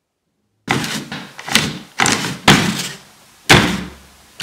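A brush being swept over an iMac G5 logic board. After silence, it makes about six quick strokes beginning about half a second in, each starting sharply and trailing off, with a short pause before the last one.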